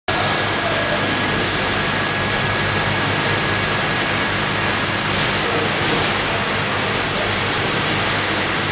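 Steady industrial din in a chemical plant's tank hall: an even, hiss-like machinery and ventilation noise over a low hum, with a thin high whine that fades out about five seconds in.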